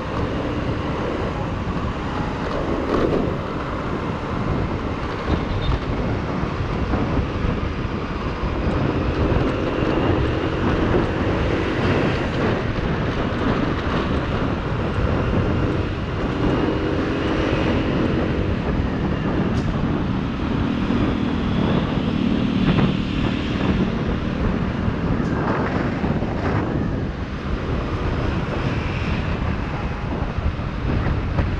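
Kymco Like 125 scooter ridden at road speed: a steady rush of wind and road noise, with the scooter's small single-cylinder engine humming beneath it.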